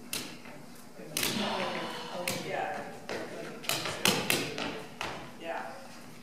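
Juggling balls dropping and bouncing on a hard stage floor: about six irregular thuds with a short echo in a large hall. Quiet voices between the thuds.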